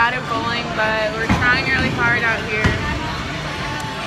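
Close voices talking, with two dull thumps about a second and a half apart.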